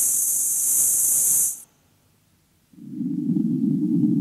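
Early tape electronic music built from blocks of filtered noise. A high hiss starts at once and cuts off sharply after about a second and a half. About a second of silence follows, then a low, rough band of noise comes in and holds.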